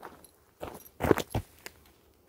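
A few footsteps and close thumps and knocks of handling noise on the camera, the loudest just after a second in, as a hand takes hold of the recording device.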